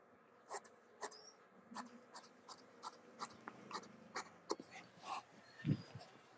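Tailor's scissors cutting through shirt fabric: a run of short crisp snips, about two a second and unevenly spaced, with a dull thump near the end that is the loudest sound.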